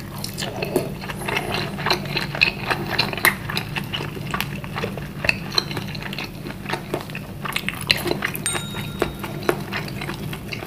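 Close-miked chewing of a bite of bakso meatball: a dense run of short wet mouth clicks and smacks, over a steady low hum.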